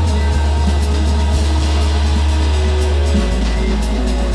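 Electronic downtempo music with a sustained deep bass line that shifts to a lower note about three seconds in, under faint high percussion ticks.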